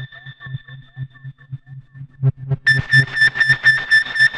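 Behringer Neutron analog synthesizer playing a pulsing electronic drone, about five or six pulses a second. A low pulsing tone carries the rhythm, and about two and a half seconds in a bright, high ringing tone joins in, pulsing with it.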